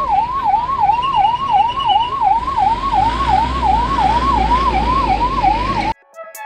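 Ambulance siren in a fast up-and-down yelp, about three sweeps a second, with a low rumble underneath from about halfway; it cuts off suddenly just before the end.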